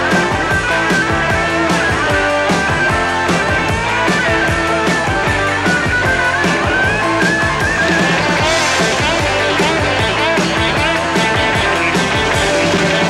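Rock band instrumental section: an electric lead guitar solo with bent, gliding notes over steady drums and bass, with no vocals. From about eight seconds in the lead moves higher into fast, wavering figures.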